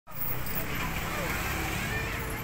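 Street ambience: a steady traffic rumble with people's voices in the background.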